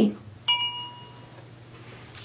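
A paintbrush knocked once against the rinse-water jar while being washed: a single sharp clink about half a second in, ringing briefly and fading.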